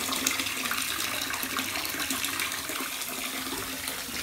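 Bath tap running into a filling bathtub: a steady rush of water, easing slightly toward the end.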